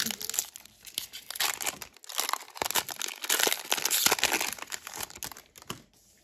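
Foil wrapper of a Pokémon trading-card booster pack being torn open and crinkled by hand, a dense run of crackling that thins out near the end.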